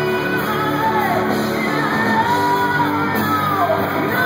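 Live rock band playing with a lead singer: sung phrases with long held notes, two of them sliding down in pitch, over a steady drums-and-band backing.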